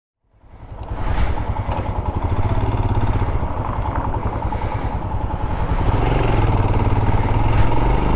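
Motorcycle engine running while riding in traffic, heard from an onboard camera along with road and wind noise. It fades in from silence over the first second and gets a little louder about six seconds in.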